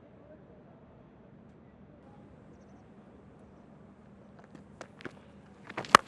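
Faint open-air stadium ambience on the field microphones. A few soft knocks come late on, then a single sharp crack of a cricket bat striking the ball just before the end.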